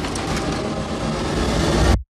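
A dense, loud rumble of trailer sound design, swelling slightly and then cut off abruptly into silence at the end.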